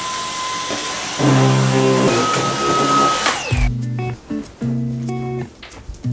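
Cordless stick vacuum running with a steady high whine, switched off about three and a half seconds in, its whine falling away. Background music with plucked notes plays alongside it and carries on after.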